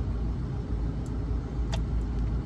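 Car engine idling with a steady low rumble, heard from inside the car's cabin, with a couple of faint clicks.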